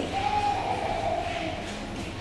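A baby crying: one long wail that slowly falls in pitch.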